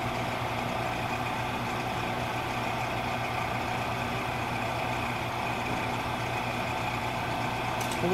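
Steady low machinery hum from the running glove box equipment, even throughout, with a low droning tone under it.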